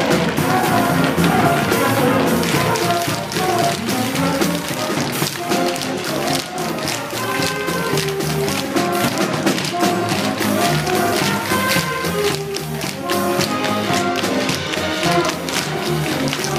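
Stage musical pit band playing, with brass, over a dense clatter of tap shoes striking a stage floor in a tap-dance number.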